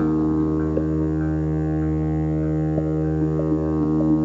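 Ambient electronic synthesizer music: a steady low drone chord held throughout, with a few short, soft notes scattered over it.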